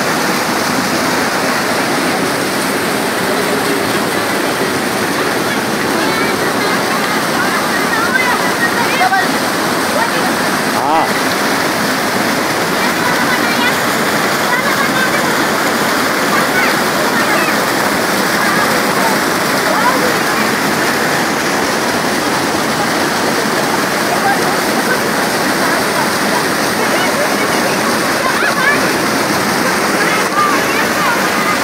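Muddy flash-flood water from a cloudburst rushing down a steep rocky channel in a loud, steady torrent.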